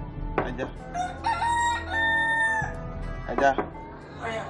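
A rooster crows once, a long held call through the middle, with short sharp calls just before and after.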